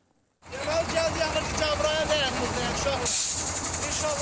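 Outdoor phone-video sound that cuts in about half a second in: wind rumbling on the phone's microphone under a man's voice.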